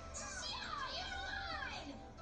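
Television audio of an anime episode: high-pitched voices crying out in rising and falling glides over background music.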